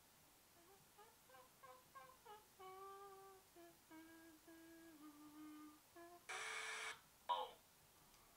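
A person humming a short tune in place of music, a run of separate notes stepping up and then back down. It ends about six seconds in with a louder, rougher held note and a brief short sound after it.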